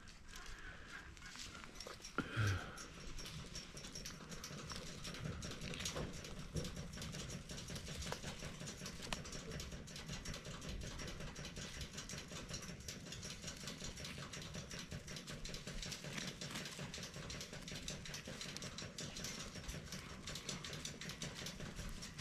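Domestic tom turkeys strutting over dry leaf litter: a steady rustle with many small ticks, and a short louder sound about two seconds in.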